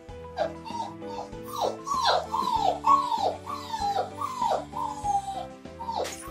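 Puppy whimpering: a quick run of about ten short high cries, each falling in pitch, over background music.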